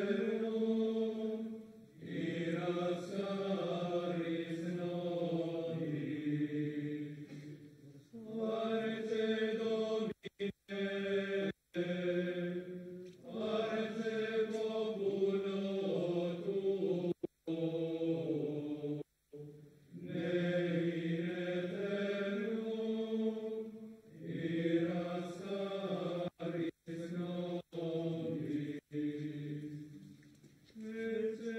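Men's voices chanting a slow liturgical hymn in phrases of a few seconds each, with short breaks for breath between them. The sound cuts out for a split second several times in the second half.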